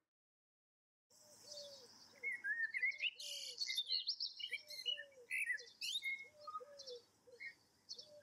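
Birdsong, starting about a second in: several birds chirping and trilling, over a lower call that repeats in short groups of two or three notes.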